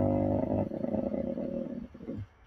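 A man's long drawn-out hesitation sound, "uhhh", held at a steady low pitch, turning rougher about half a second in and breaking off just before the end.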